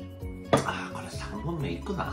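A drinking tumbler set down on a table with one sharp knock about half a second in, over steady background music. A voice follows.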